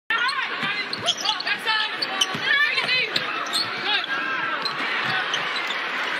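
Basketball being dribbled on a hardwood court, the bounces landing roughly once a second, over the steady noise of an arena crowd.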